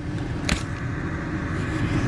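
Steady low rumble of car-interior background noise, with a single sharp click about half a second in, the sound of a hand handling the camera.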